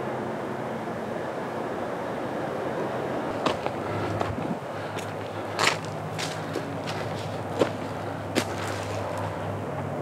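Steady drone of distant motorway traffic, with a few sharp crunching footsteps on a dry, crumbly clay path from about halfway on.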